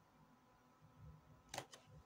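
Near silence: room tone, with a few faint short clicks near the end.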